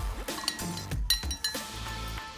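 Metal teaspoon stirring turmeric and water in a glass mug, clinking against the glass several times at irregular intervals.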